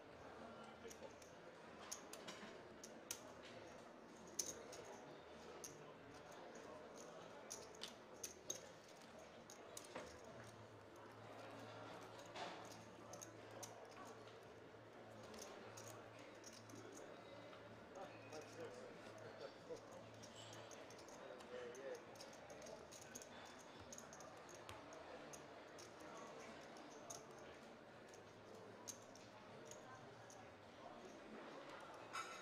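Poker chips clicking as they are handled and stacked at the table: many short, sharp clicks scattered throughout, over a faint murmur of voices.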